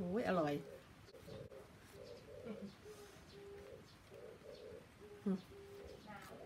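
A dove cooing faintly, a low phrase of several soft notes repeated over and over.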